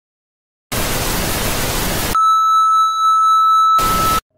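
Television static hiss, the sound effect of an untuned TV screen, starting a little under a second in. It gives way to a steady high test-tone beep, and the static comes back briefly near the end.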